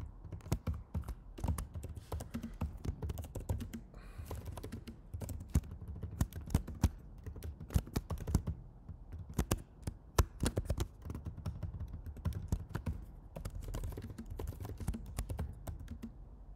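Typing on a computer keyboard: irregular runs of key clicks, with a few sharper, louder keystrokes.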